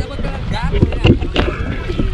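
Voices of people wading in shallow seawater, over a steady low rumble of wind on an action camera's microphone, with a few short splashes of water.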